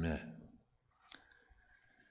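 A single sharp click about a second in, after the tail of a man's spoken phrase, with a fainter tick shortly after against low room tone.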